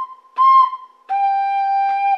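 Soprano recorder playing a short C, then a lower G held for about a second, a clean steady tone. A first C ends just at the start.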